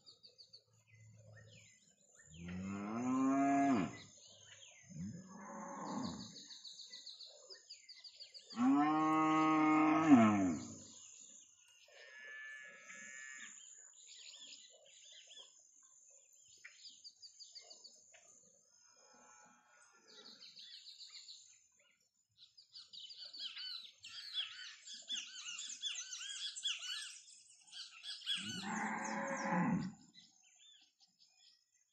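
Cattle lowing: four long moos, the loudest about nine seconds in and the last one starting just before the end. Small birds chirp between the calls.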